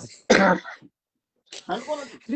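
A man clears his throat with one short, rough cough.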